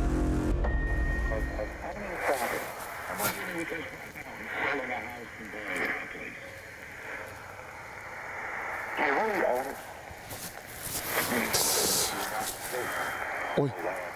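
Portable radio sweeping through frequencies: static hiss broken by short, chopped snatches of voices. A low steady hum fades out in the first two seconds.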